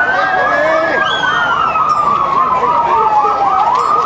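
Two emergency-vehicle sirens sounding together. One is a slow wail that rises, then falls steadily; the other is a fast yelp sweeping up and down about three to four times a second.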